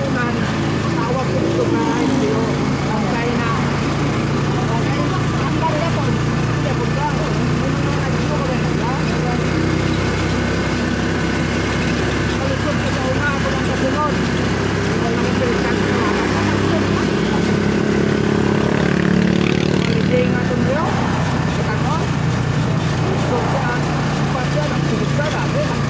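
Motorcycle engine running steadily while riding along a road, with wind rushing over the phone's microphone.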